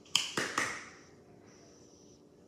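Three quick sharp knocks or slaps within about half a second, the first the loudest, with a short fading ring after the last.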